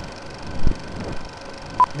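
Film-countdown-leader sound effect: a steady crackly hiss of old film running, with two low thumps about two-thirds of a second and one second in, and a short high beep near the end, the sync 'two-pop' of the countdown.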